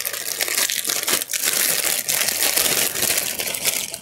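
Thin clear plastic packaging crinkling and crackling continuously as it is handled and opened.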